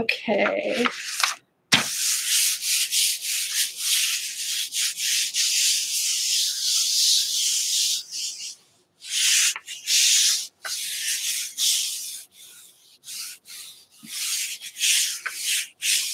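Bare hands rubbing and smoothing a large sheet of paper over a gel printing plate, pressing it down so it lifts the paint: a dry, hissing swish in repeated strokes, broken by short pauses a little past halfway and again near the end.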